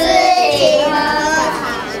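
Children singing a song with long, sliding held notes, loudest in the first second and a half.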